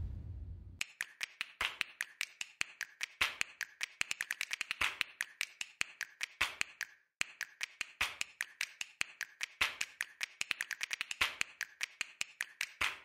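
Wind noise cuts off abruptly under a second in. A rapid, uneven run of sharp clicks or taps follows, several a second, with a short pause about seven seconds in.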